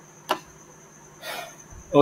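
A single sharp computer mouse click about a third of a second in, over faint steady background hiss with a high thin whine, followed by a short breathy noise near the end.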